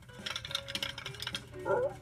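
Rapid clattering clicks and clinks of toy alphabet blocks being shuffled into a new word, a cartoon sound effect, lasting about a second and a half.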